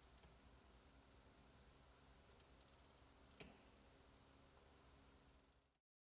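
Near silence, with a few faint clicks about halfway through from a wrench tightening a new oil filter by its final three-quarter turn.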